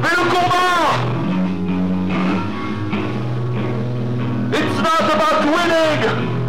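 Live screamo band playing, heard as a distorted camcorder recording. Arching melodic lines swell near the start and again about three-quarters of the way in, with a steadier passage of held bass notes between them.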